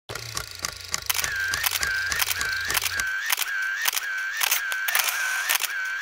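A camera shutter firing over and over. After the first second of quick clicks, each shot is followed by a short motor-wind whir, about two frames a second. A low hum sits under the first three seconds.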